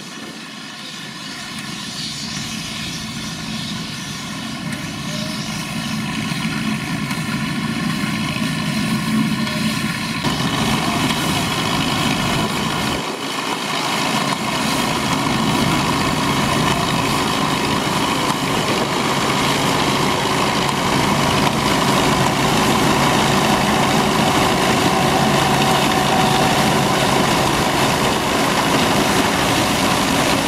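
A vintage tractor's engine running steadily as it tows a trailed combine harvester through standing wheat, the combine's threshing machinery working. The sound grows steadily louder as the machines come close, and from about ten seconds in it turns into a fuller mechanical clatter and rush from the combine.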